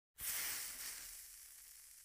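Static-like hiss from a logo intro sound effect, strongest in the high end. It starts suddenly and slowly fades away.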